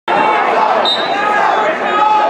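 Many spectators' voices talking and calling out at once in a gymnasium, a loud, steady mix of voices.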